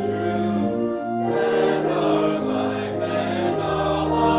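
A hymn sung by a group of voices with instrumental accompaniment, in slow held chords that change about once a second.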